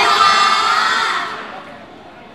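Several high voices shouting together in one drawn-out cheer that fades out about a second and a half in.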